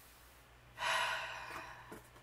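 A woman's breathy sigh: one audible exhalation about a second in, fading away over most of a second.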